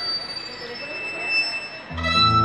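Solo violin holding thin, high sustained notes, softly. Right at the end the full band comes in with a strong bass note.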